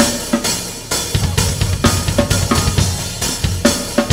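Drum kit played in a dense groove of kick, snare and cymbal hits, over a hip-hop backing track with heavy bass.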